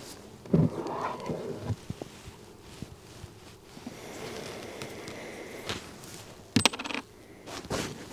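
Handling noises as a plastic oxalic-acid vaporiser is slid out of a wooden hive entrance: a few light knocks and clicks, with cloth rustling and scraping as the entrance cloth is tucked back in.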